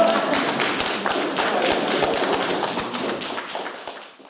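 A small audience applauding, a dense patter of many hands clapping that fades away near the end.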